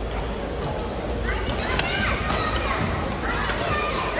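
Badminton doubles rally in a sports hall: a few sharp racket hits on the shuttlecock over steady hall noise, with voices calling out from about a second in.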